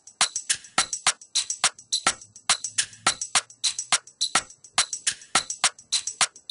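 Programmed Afrobeats-style percussion loop playing back from an FL Studio step sequencer at about 105 BPM: sharp, dry percussion hits in a quick syncopated pattern, about four to five a second, with a faint low bass tone under them midway.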